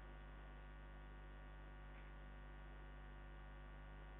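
Near silence apart from a steady low electrical mains hum with a ladder of faint overtones.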